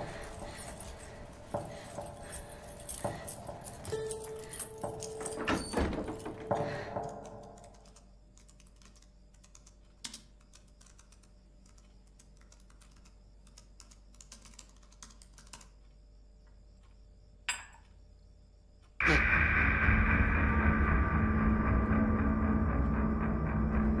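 Horror-film soundtrack: tense music with scattered knocks, then a hushed stretch with faint laptop-keyboard tapping, broken about five seconds before the end by a sudden loud sustained drone.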